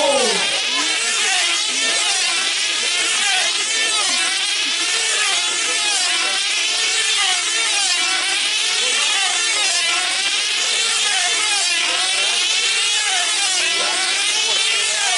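F2C team-race model aircraft's small diesel engines running flat out as the models circle on their control lines. The high whine rises and falls in pitch steadily as each model sweeps past.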